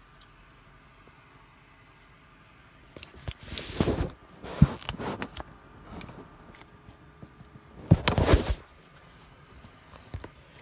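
Handling noise as the plastic casing of a disposable vape is pulled off: two bursts of rustling and scraping with sharp plastic clicks, about three to five seconds in and again around eight seconds in, the loudest a single sharp click near the fifth second.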